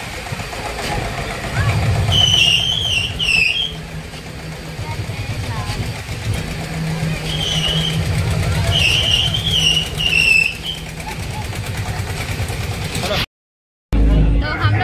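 Fairground ride machinery running with a low, pulsing hum. Twice a high, wavering shrill sound rises above it. The sound cuts out abruptly for a moment near the end.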